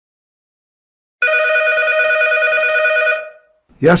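A telephone rings once, about a second in: a steady electronic ring of several tones together, lasting about two seconds.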